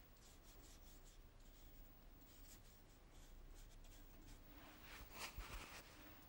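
Faint swishing of a large wash brush stroked across watercolour paper, a series of short strokes that grow a little louder near the end.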